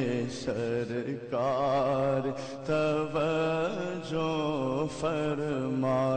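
A man singing an Urdu naat in long held, melismatic phrases with heavy vibrato and short breaks between them, over a steady low droning hum, with no instruments.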